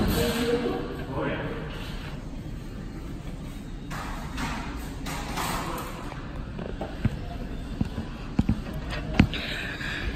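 Automated key-duplicating kiosk mechanism running with a steady low hum, and a few sharp clicks in the second half as its parts move.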